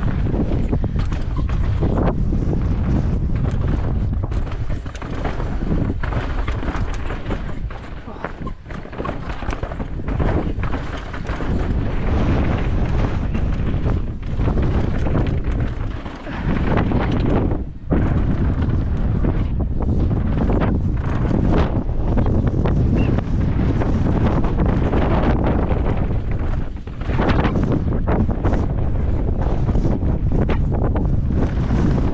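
Wind buffeting a helmet-mounted camera's microphone as a mountain bike rides down a dry dirt track, mixed with tyre noise on loose dirt and the bike's rattles and knocks over bumps. The noise eases briefly a few times, around the middle and again near the end.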